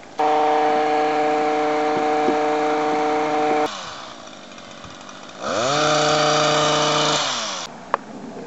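Hedge trimmer cutting a hedge at full speed, with a steady high motor hum that stops abruptly about three and a half seconds in. It revs up again about a second and a half later, holds steady, then winds down near the end.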